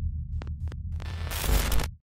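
Glitch sound design for a logo reveal: a low, throbbing electrical hum broken by a few sharp digital clicks, then a burst of static-like noise about a second and a half in. It cuts off suddenly at the end.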